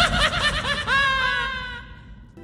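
A high-pitched laugh: a quick run of short 'ha' pulses, ending in a longer falling note about a second in that fades away.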